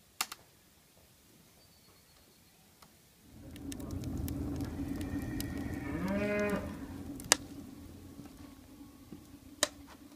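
A cow moos once, about six seconds in, a single call that rises and then falls in pitch. It is heard over a steady low rumble that starts about three seconds in.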